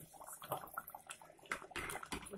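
A metal ladle stirring thick curry in an aluminium pot: soft wet sloshing with light scrapes and clicks, and a short louder swish about one and a half seconds in.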